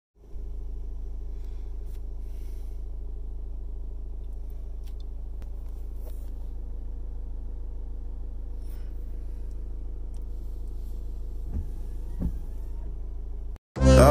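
Car engine idling, a steady low rumble heard inside the cabin, with two faint short squeaks near the end.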